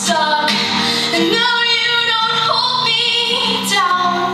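A girl singing a solo song live, holding and bending long notes, accompanied by her own acoustic guitar.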